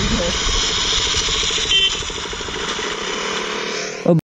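Single-cylinder engine of a KTM RC sport bike idling steadily with an even pulse.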